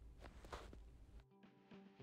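Faint snips of small scissors cutting through folded paper, then quiet background music with a steady repeating bass line starting about a second in.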